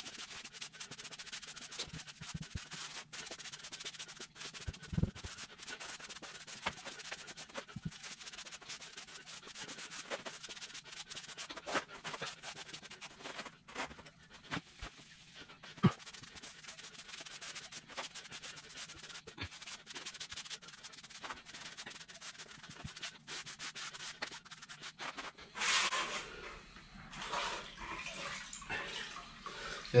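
Soft-edged rubber grout float scraping and rubbing across hexagon floor tiles, working grout into the joints and off the tile face, with scattered small knocks. The scraping grows louder about four seconds before the end.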